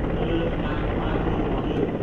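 Large military transport helicopter running with its main rotor turning, a steady, dense rotor and turbine noise.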